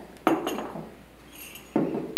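A few light clinks of a spoon and tableware against ceramic soup bowls, the loudest a quarter second in.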